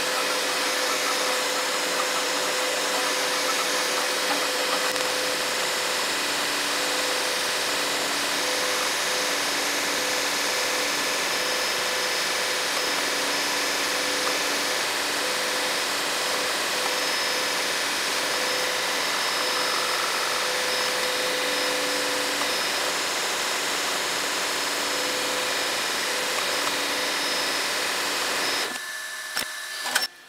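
FDM 3D printer running a print: a steady whir of its cooling fans with humming motor tones that shift and break off every second or so as the print head moves. The sound cuts off shortly before the end.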